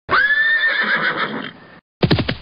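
A single long, high-pitched animal call that sweeps up at the start, holds with a wavering pitch, and fades out about a second and a half in.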